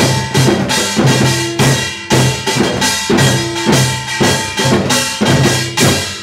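Kkwaenggwari, the small Korean brass gong of samul nori, struck with a mallet in a fast rhythmic pattern, about three sharp ringing strikes a second, the player's left hand on the back of the gong shortening the ring.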